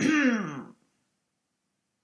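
A woman clears her throat once, a brief voiced sound that falls in pitch.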